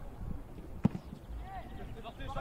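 A football is kicked once, likely a long goal kick, making a single sharp thud a little under a second in. Players call out in the distance.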